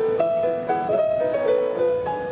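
A 1915 Steinway & Sons model D concert grand piano played solo: a melody of held notes in the middle register over softer accompanying notes, the notes changing a few times a second.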